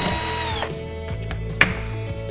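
Cordless drill-driver running briefly to drive a screw into a flat-pack cabinet panel: a steady motor whine that cuts off well before a second in. A single sharp knock follows about one and a half seconds in.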